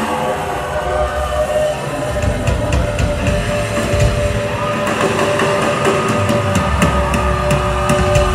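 Concert intro tape through a PA, recorded from the crowd: a heavy low rumble that sets in suddenly, with long held tones over it and scattered sharp clicks.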